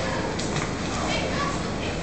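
Indistinct children's voices and background hubbub echoing around an indoor pool hall.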